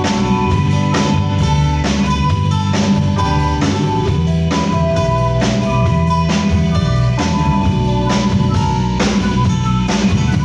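Live rock band playing an instrumental passage: flute melody over electric guitar and bass, with a drum kit keeping a steady beat.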